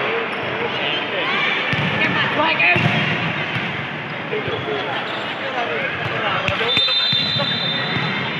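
A volleyball bouncing a few times on the court floor in a large echoing sports hall, under players' voices, with a short high whistle about seven seconds in.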